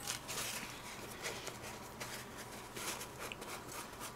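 Faint rustling and rubbing of a damp paper towel as a watercolour crayon is wiped on it to take off its waxy coating, with a few soft scratches.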